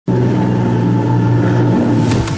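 Engines of a 23 m XSV20 powerboat running at high speed, a steady loud drone over the hiss of spray and wake. The pitch dips slightly near the end.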